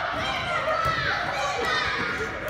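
Children and adults shouting and squealing together while playing a ball game in a gym hall.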